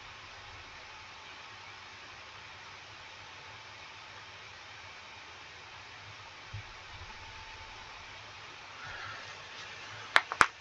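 Faint, steady background hiss of room tone, with a single soft knock about six and a half seconds in.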